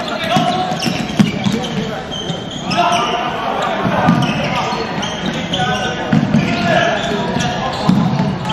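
Floorball play in a sports hall: indistinct shouts from players and spectators over repeated short clacks of sticks and ball on the court floor, echoing in the large hall.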